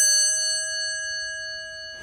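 A single bell-like chime, struck just before and ringing out, fading steadily as it decays.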